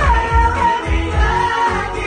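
Pop song playing loud through a club PA: a sung vocal line over a backing track with a steady bass beat about twice a second.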